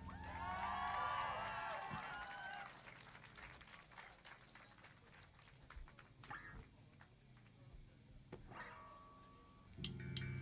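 A small crowd whooping and cheering faintly as a live rock song ends, dying away after about two and a half seconds. Then a quiet gap between songs with scattered faint clicks and stage noises.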